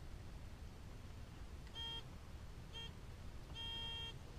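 Metal detector beeping three times as it sounds off on a buried target: a short beep about two seconds in, a briefer one a second later, and a longer one near the end.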